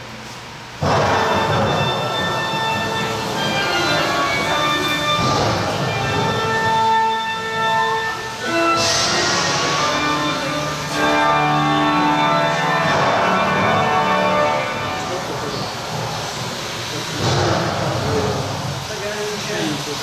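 Dark ride's orchestral show soundtrack with sound effects, playing through the scene speakers. It starts suddenly about a second in and carries on with sustained held notes.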